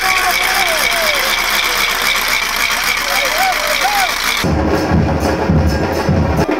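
A loud crowd of football fans shouting and cheering in a dense din with a steady high edge. About four and a half seconds in, it changes abruptly to drums beaten in a steady rhythm.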